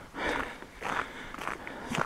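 Footsteps of a man walking on a slushy, snow-covered dirt road: two soft steps in the first second, mixed with his breathing.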